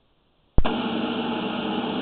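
A sharp click about half a second in, then a steady machine-like hum with several held tones.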